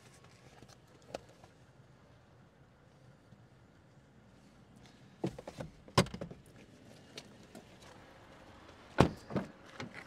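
Quiet car interior with a few sharp clicks and knocks from the car being handled. The loudest come about six and nine seconds in, as the Honda Jazz's rear door latch is released and the door opened.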